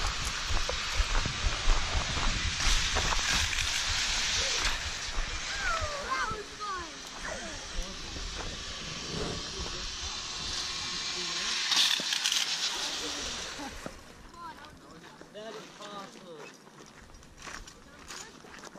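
Wind rushing and buffeting against the microphone, with faint voices of people talking in the background; the rushing dies down about fourteen seconds in.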